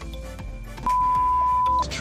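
A single steady electronic beep, one pure tone about a second long that starts a little under a second in, over background music: the kind of bleep laid over a spoken word to censor it.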